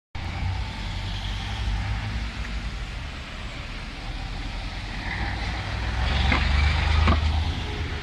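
Road traffic: cars, vans and trucks driving past, a steady rumble of engines and tyres. It grows louder about six seconds in as a vehicle passes close.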